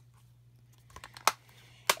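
Clear plastic stamp-set case handled in the hands: a few light clicks and taps after about a second of near-quiet, the sharpest one near the end.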